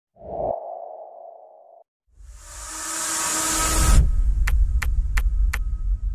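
Intro sound effects: a short droning tone that fades out within about two seconds, a brief gap, then a whoosh that swells over a deep rumble to a peak about four seconds in, followed by four sharp ticks about two a second over the rumble.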